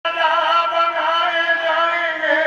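A man singing a devotional song into a microphone, his voice wavering on long held notes over a harmonium holding a steady note.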